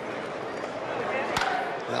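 Ballpark crowd murmur, then a single sharp crack of a bat hitting a pitched baseball about a second and a half in, sending it up as a foul pop-up.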